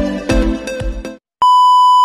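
Electronic intro music with a steady beat stops about a second in. After a short silence comes a steady, high test-pattern beep, the tone that goes with TV colour bars, used here as a glitch transition effect.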